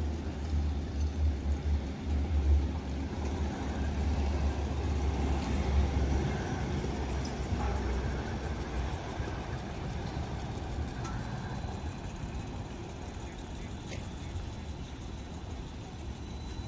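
Outdoor city ambience with a Siemens Combino low-floor tram running past, under a deep, uneven rumble that stops about six seconds in. Steady traffic noise follows.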